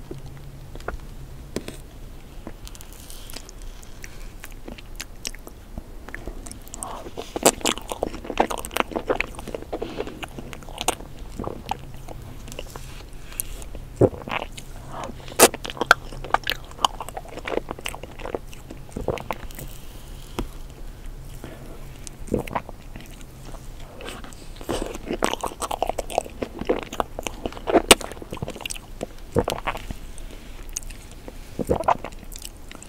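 Close-miked eating of a frozen ice cream cake: soft bites and chewing with sharp mouth clicks and smacks, coming in several bursts after a quieter first few seconds.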